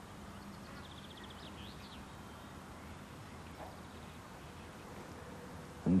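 A low, steady hiss of an old VHS soundtrack, with a faint, high, chirping twitter about a second in.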